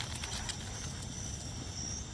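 Crickets chirring steadily at night. A few quick taps in the first half second come from a Rottweiler's paws scrabbling on a concrete path as it lunges after a light.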